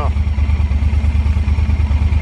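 Yamaha Super Ténéré's parallel-twin engine idling with a steady low, pulsing rumble.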